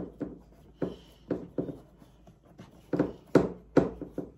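Fingers pressing crumbly pie-crust dough against the sides of a metal baking tray, giving a string of irregular soft taps and knocks, the loudest few near the end.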